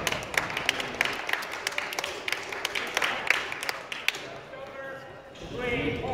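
Badminton hall between rallies: many sharp, irregular clicks and taps echo in the large room over murmuring voices, thinning out after about four seconds, with a voice near the end.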